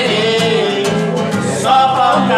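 Nylon-string acoustic guitar strummed in a Latin rhythm while a man sings along.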